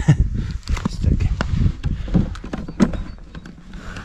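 Camera handling noise: irregular knocks and rustling on the microphone as the camera is picked up and turned around. It grows quieter in the last second or so.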